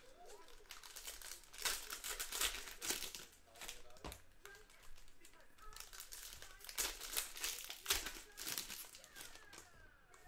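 Foil wrappers of Panini Prizm basketball hobby packs crinkling in a run of irregular crackles as the packs are handled and opened.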